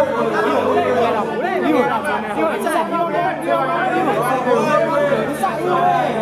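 Several men's voices talking and calling out over one another in a continuous, overlapping chatter.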